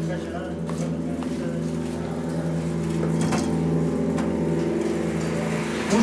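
A steady, low machine hum with a few light clicks.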